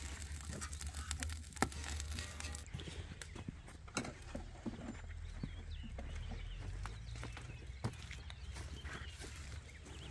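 Small kindling fire in a steel fire pit crackling with sharp ticks for the first couple of seconds, then a steady low rumble with scattered small knocks.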